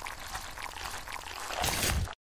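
Pouring-liquid sound effect: a steady splashy hiss that grows louder near the end and then cuts off abruptly.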